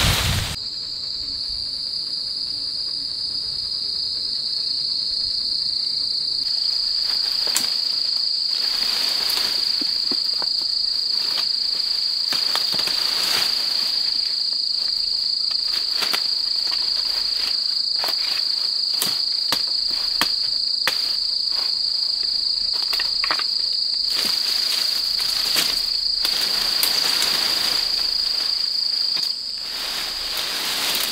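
Insects in forest keeping up a steady, high-pitched drone. Over it come scattered sharp crackles and snaps of dry leaves and twigs underfoot.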